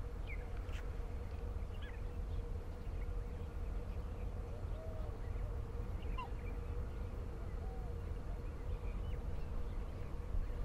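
Scattered faint bird calls, short separate chirps and calls coming every second or two, over a steady low hum and a low rumble.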